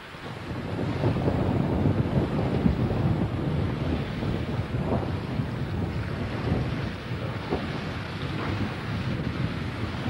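Wind and sea surf: a steady, rumbling rush of noise that swells in about half a second in and stays at much the same level.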